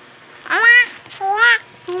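A toddler's high-pitched voice making two short, drawn-out calls, each rising and falling in pitch.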